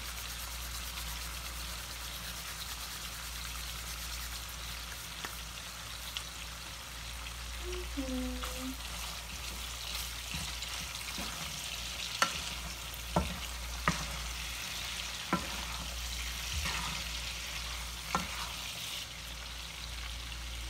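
Shrimp and sliced garlic sizzling in oil in a frying pan, a steady hiss. In the second half a wooden spatula stirs them, knocking against the pan about five times.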